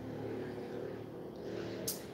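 Low hum of an engine, fading toward the end, with one short click just before the end.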